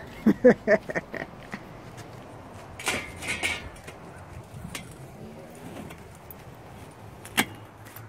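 A man laughs briefly, then handling noise: a short scrape about three seconds in and one sharp knock near the end.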